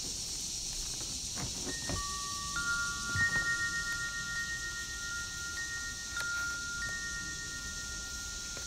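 Several chime notes sound about two seconds in, four clear tones overlapping and ringing on for several seconds over a steady high hiss. A few soft paper rustles come from pages being handled.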